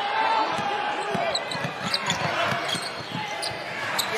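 Basketball dribbled on a hardwood court in a large hall, with repeated bounces, short high sneaker squeaks and a steady crowd murmur.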